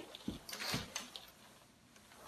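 Handling noise from a Guava Family Lotus travel crib being set up: the mesh fabric rustling and the frame's legs and fittings giving a few light knocks and clicks in the first second or so, then quieter handling.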